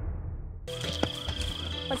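The low rumbling tail of a title sting fades out. Under a second in it cuts sharply to a steady, high-pitched chorus of calling animals, with a single click about a second in.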